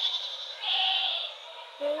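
A woman's voice: a soft breathy hiss, then a short hummed "hmm" near the end.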